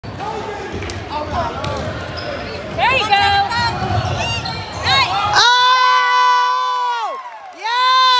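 Basketball being dribbled on a gym floor amid players' and spectators' voices. About five and a half seconds in, a spectator lets out a loud, high, drawn-out cheer that falls away, followed by a second shorter shout near the end.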